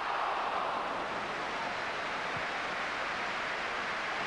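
Large stadium crowd roaring steadily, swelling most in about the first second as a free kick is headed at goal.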